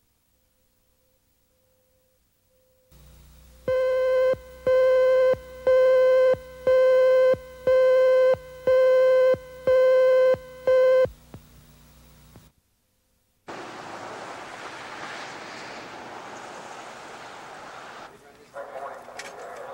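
A row of about nine evenly spaced electronic beeps on a broadcast videotape, one steady mid-pitched tone each, roughly one a second, over a low hum. They mark the station slate between news segments. After a brief silence comes a steady hiss.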